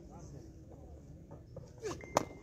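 Faint, distant voices of people out on the ground, with a short call near the end that falls in pitch.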